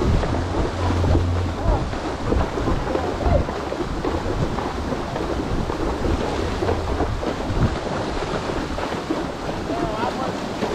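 Horses wading through a shallow creek, their legs splashing and churning the water in a steady wash.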